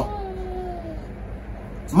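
A toddler's faint, drawn-out vocal sound, one note slowly falling in pitch for about a second, in a quiet room with a low hum.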